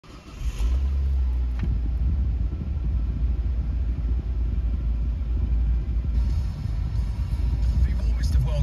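Nissan Qashqai's engine idling, a steady low rumble heard inside the cabin, starting about half a second in. A single short click about a second and a half in.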